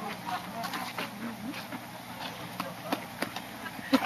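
Indistinct voices of people talking in the background, with a few scattered sharp clicks, the clearest near the end.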